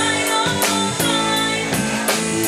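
Live band playing an instrumental passage of a song: drum kit with cymbals keeping a steady beat under sustained keyboard chords.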